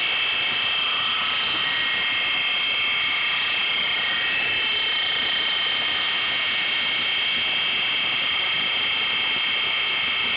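Steady running noise of procedure-room equipment: an even fan-like hiss with several high, steady whining tones over it, unchanging throughout.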